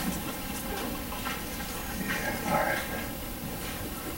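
Steady hiss of room noise and recording noise. A short laugh comes at the very start, and a faint voice is heard about two and a half seconds in.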